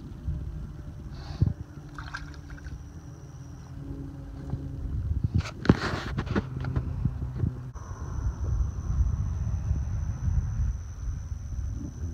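Shallow water lapping and splashing around hands holding a freshwater drum upright in the shallows while it revives before release, with a brief splash about six seconds in. A steady low rumble runs underneath.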